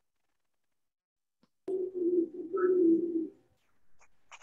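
A dove cooing, picked up through a participant's open microphone on a video call: one low, drawn-out coo starting a little under two seconds in and lasting under two seconds, after a stretch of dead silence from the call's noise gate.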